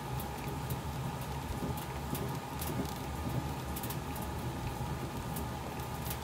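Hand-worked bat-rolling machine turning a 2024 Marucci CATX Vanta alloy bat between its rollers, with scattered light clicks over a steady low hum.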